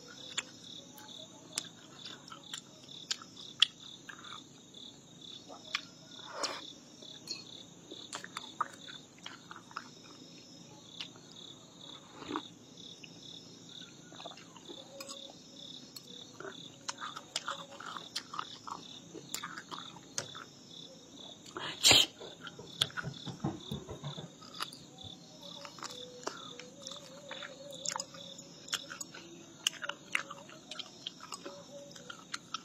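A high insect chirp repeating evenly and steadily in the background, with a person chewing food and scattered light clicks of a metal fork against a glass bowl. One sharper, louder click comes about two-thirds of the way through.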